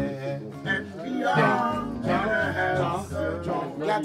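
Music: a man's voice singing a melody over a low, steady bass line.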